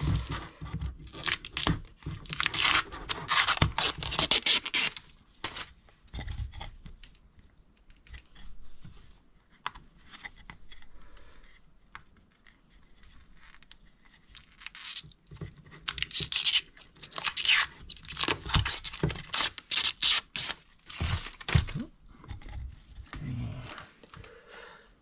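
Protective film being peeled off a clear laser-cut acrylic panel: two long spells of tearing and crackling with a quieter stretch between them.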